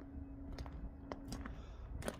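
Quiet background ambience: a faint low rumble with a thin steady hum that stops about one and a half seconds in, and a few soft clicks.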